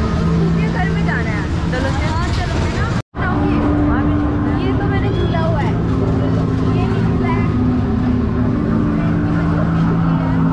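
Fairground crowd noise at night: many people talking and calling over a steady low mechanical hum from the rides and their machinery. A brief, sudden dropout to silence comes about three seconds in.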